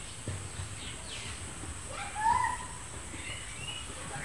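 Faint rural background with a few short animal calls: a falling chirp about a second in, a louder short call a little after two seconds, and faint high chirps near the end.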